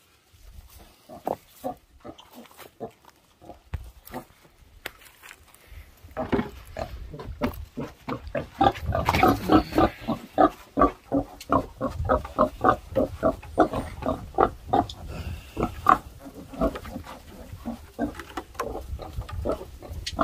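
Pig grunting in a run of short repeated grunts, faint at first, then louder and quicker from about six seconds in, at roughly two to three grunts a second.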